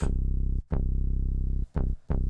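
Synth bass from the Akai MPC One+ 'Soft Thumper' bassline preset, transposed down an octave and played from the pads. There are two held notes, each about half a second to a second long, then a short note and the start of another near the end.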